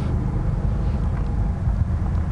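Steady low rumble of wind buffeting a microphone set low in open grass.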